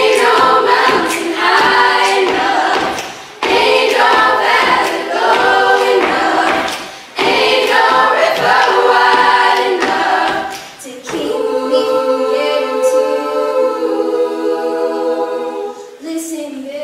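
A cappella girls' choir singing: three sung phrases separated by short breaths, then a chord held steady over the last few seconds.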